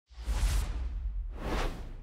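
Intro transition sound effect: two whooshes about a second apart over a deep low rumble.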